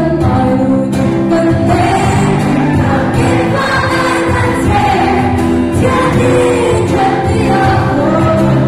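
Live band playing a song, with sung vocals held on long notes over guitar and drums.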